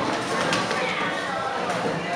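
Indistinct voices with no clear words.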